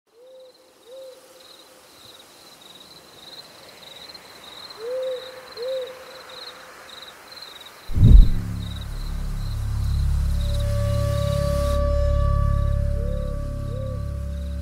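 Night ambience: an owl hooting in pairs of short calls over insects chirping in a steady high pulse. About eight seconds in, a sudden deep boom, the loudest sound, opens into a low sustained musical drone with held notes above it.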